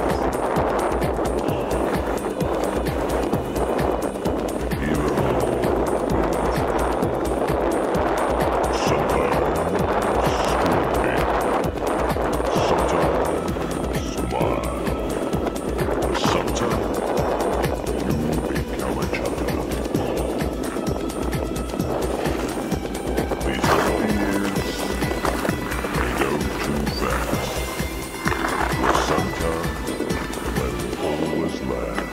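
Skis sliding and scraping over snow in a steady hiss, with music playing over it.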